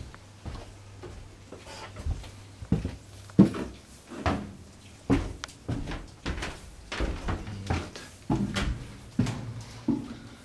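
Footsteps and knocks, irregular and about once a second, as someone moves through a small boat cabin and up wooden stairs, over a steady low hum.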